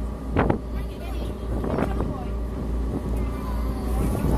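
Small car ferry's engine running at a steady pitch during the crossing, with wind buffeting the microphone.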